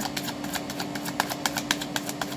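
A deck of tarot cards being shuffled by hand: a fast, uneven run of soft card clicks and flicks, over a steady low hum.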